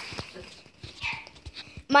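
A dog shut out in the backyard, barking and crying in a few short, faint bursts, heard from inside the house. He is upset at being put outside, as he is not used to being down there.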